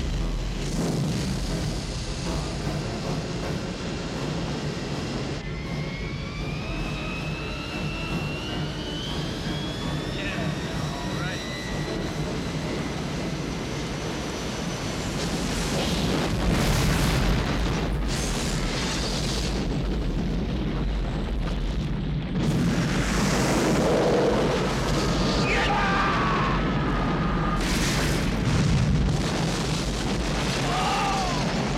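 Action-film sound mix: a fuel trail burning, a jet airliner's engines with a rising whine, and orchestral score. Heavy booms come in the second half.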